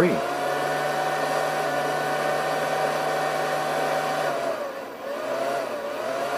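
A steady machine hum with a whine over it, which sags and dips briefly about five seconds in and then comes back.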